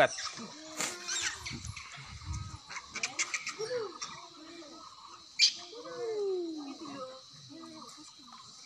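Macaques giving soft squeaky calls: several short rising-and-falling calls, and a longer falling call past the middle, over a steady high insect drone. There is one sharp click a little past halfway.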